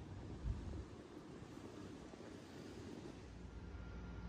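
Faint wind on the microphone outdoors, a low even rumble, with one soft thump about half a second in.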